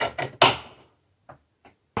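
Metal sliding barrel bolt on a wooden door being slid by hand: a quick run of sharp clacks in the first half second, the loudest trailing off briefly, then two faint clicks.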